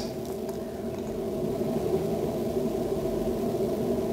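A steady low hum with a faint whir, unchanging throughout: continuous background machine noise in the room.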